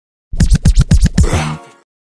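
Short electronic intro sting: after a brief silence, a rapid run of about eight sharp hits ending in a held tone that fades out.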